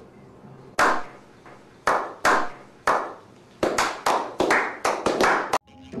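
Hand claps, slow and widely spaced at first and then quickening to several a second, each clap ringing briefly after it: a slow clap building up.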